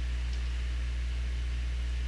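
Steady low hum with a faint even hiss, unchanging throughout; no other sound stands out.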